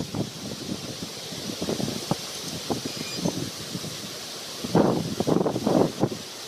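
Wind buffeting the microphone over rustling leaves, with cloth streamers flapping in front of it. A louder burst of rustling and flapping comes near the end.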